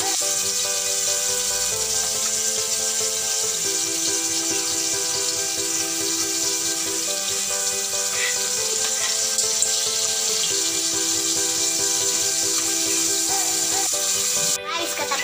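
Dried fish frying in hot oil in a wok, a steady sizzle, under background music of held chords that change every few seconds.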